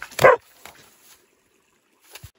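A dog gives a single short bark about a quarter second in.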